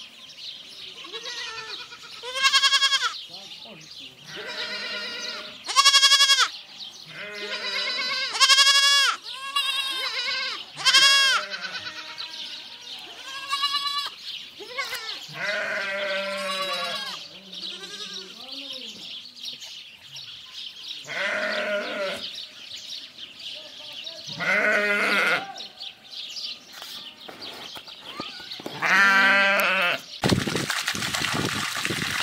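Young goats bleating: about a dozen wavering, quavering bleats a few seconds apart, some loud and close, others fainter.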